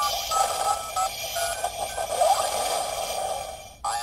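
A Knight Rider K.I.T.T. replica USB car charger plays an electronic sound effect through its small speaker as it powers up: short steady beeps over a hissing electronic wash, with a rising sweep about two seconds in. The sound fades away near the end.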